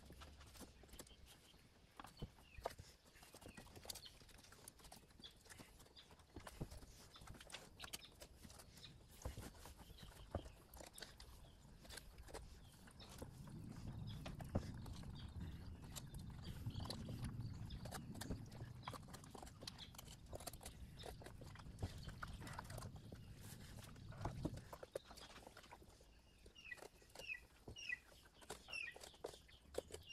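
Faint, scattered soft clicks and handling sounds of a knife cutting meat loose inside a large snapping turtle's shell, with a low rumble through the middle stretch.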